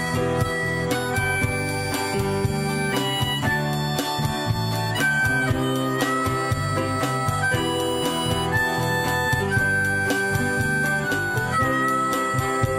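Harmonica playing a melody of long held notes over a band accompaniment, in an instrumental break between sung verses of a song.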